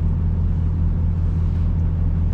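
Steady low droning hum of an idling diesel engine, heard from inside a semi truck's sleeper cab.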